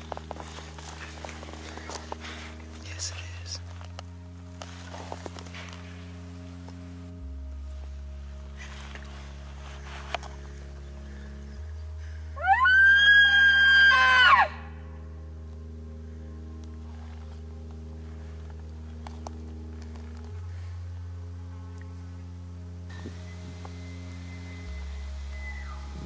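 A single elk bugle, a high whistling call that rises, holds for about two seconds and drops away, over background music with slow, steady chords.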